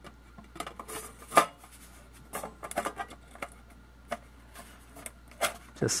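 Thin sheet-aluminium cover plate being fitted back onto a Tektronix oscilloscope plug-in module, making a scatter of light metallic clicks and scrapes. The sharpest click comes about a second and a half in.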